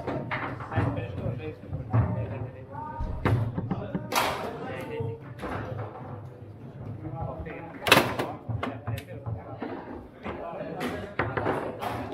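Foosball being played: the hard ball struck by the rod-mounted figures and knocking against the table, a series of sharp clacks and thuds, the loudest about eight seconds in, over steady background chatter.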